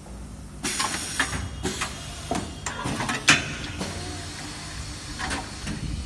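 Automatic premade-bag powder packing machine working: air hissing and a series of sharp clacks and knocks from its pneumatic cylinders and bag clamps, starting about half a second in, with the loudest clunk about three seconds in.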